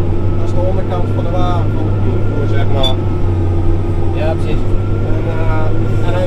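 John Deere 6R tractor engine running steadily, heard from inside the cab as a constant low drone, with voices talking over it.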